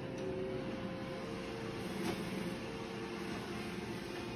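iRobot Roomba j7+ robot vacuum running steadily as it cleans a thick shag rug, with one faint click about halfway through.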